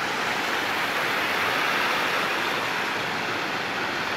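Water spilling over a small river weir, a steady rushing sound close by.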